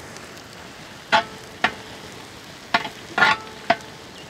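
A metal spatula scraping and clinking against a large metal pot while stirring sliced shallots and green chillies as they fry, five sharp strokes at uneven intervals. Under them runs a steady faint sizzle.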